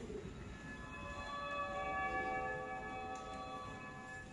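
Soft instrumental music: a sustained bell-like chord of several held notes that comes in about half a second in, swells, and slowly fades toward the end.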